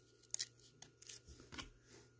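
Faint handling of stiff cardboard trading cards: a few short crisp clicks and light rubs as one card is slid off the front of a hand-held stack of 1992 Pinnacle baseball cards, the sharpest click about a third of a second in.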